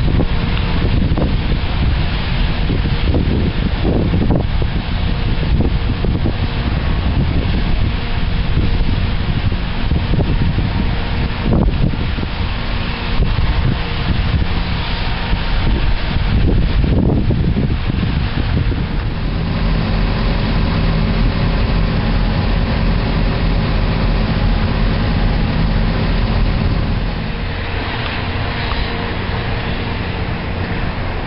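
Wind rumbling steadily on the microphone, with a vehicle engine running close by. A steady low hum is heard through the second half.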